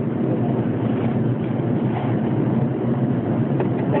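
Steady road and engine noise of a car driving, heard from inside the cabin.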